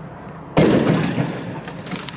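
A firework goes off with a sudden loud burst about half a second in that dies away over about a second, followed by scattered crackles.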